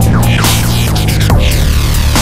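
Industrial-style dubstep: heavy compressed drums under a loud, grinding, throbbing bassline, with repeated falling pitch sweeps over the top.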